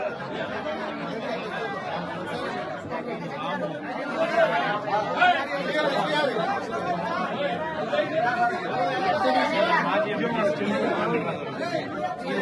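A crowd of men talking over one another at close range: overlapping, unintelligible chatter with no single voice standing out.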